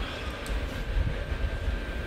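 A deep, uneven rumble like a passing train, with a thin steady high tone that comes in about a quarter second in; ambient sound design from the music video playing.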